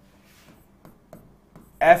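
Faint scratching and tapping of a pen writing a word by hand on a board, with a couple of small ticks as strokes start; a man's voice starts near the end.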